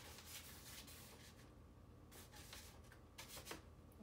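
Faint swishing of a paintbrush dragging thinned acrylic paint across paper, in several separate strokes.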